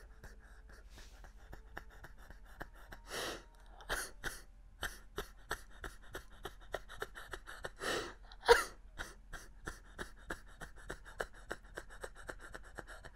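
A man crying behind a hand pressed over his mouth: irregular short gasping breaths and sniffles, with one louder sob a little past eight seconds in.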